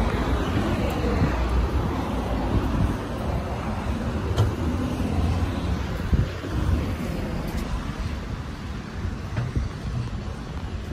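Road traffic on a busy multi-lane city road: a steady wash of car and bus engine and tyre noise, with a heavier low rumble over the first few seconds.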